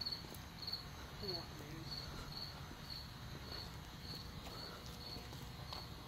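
A cricket chirping steadily, a little under two high chirps a second, with a faint murmur of a voice about a second in.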